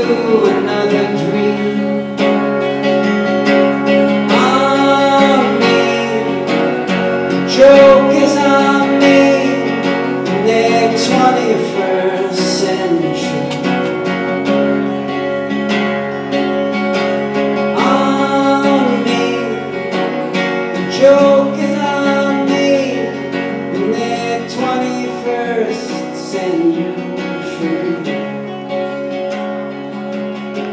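A lone guitar playing the instrumental close of a live folk-rock song, with notes ringing on, easing off a little in loudness towards the end.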